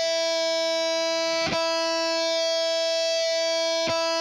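Electric guitar's open high E string through distortion, ringing out as one sustained note and picked again about one and a half seconds in and near the end, checked against a tuner that shows it in tune.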